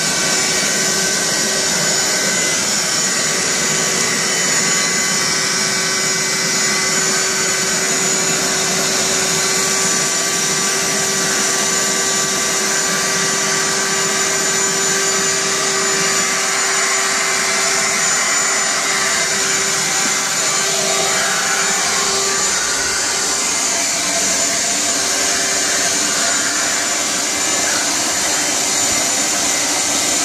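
Shop vac running steadily, a constant rush of air with a high motor whine, as its floor nozzle is pushed over the floor sucking up dryer lint and dust.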